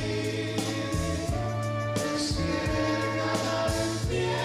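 Live pop ballad music: a woman singing over a band, with choir-like backing voices, held chords and a steady bass line.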